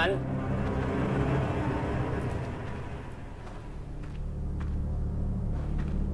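A low, steady hum that grows stronger about four seconds in, after a soft wash of sound fades away over the first few seconds, with a few faint clicks.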